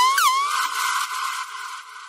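The tail end of an electronic dance track: with the bass beat gone, a synth effect sweeping down and back up about four times a second stops about half a second in, leaving a wash of hiss that fades out.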